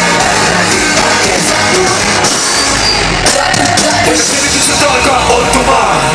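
Live band music with vocals played loud through a stadium PA system, heard from within the crowd.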